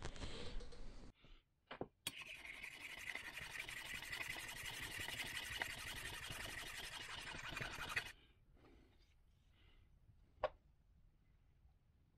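A compressor connecting-rod cap rubbed back and forth across a flat steel file, a steady rasping for about six seconds that stops abruptly. The cap's face is being filed down to make the rod's bore a few thousandths undersize for refitting. Near the end comes one light click.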